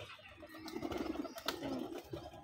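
Domestic pigeons cooing, a low rolling call, with a few sharp wing flaps and claps as a pigeon takes off, the loudest about one and a half seconds in.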